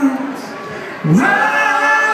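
Live band vocals through a PA: a held sung note ends, there is a brief quieter gap, then the voice slides up into another long held note about a second in.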